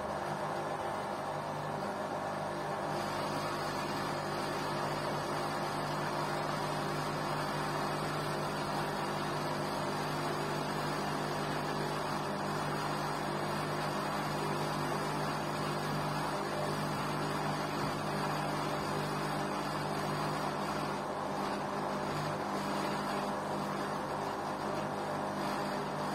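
LG Intellowasher 5 kg front-loading washing machine running a wash cycle: a steady motor hum as the drum turns the wet, soapy laundry.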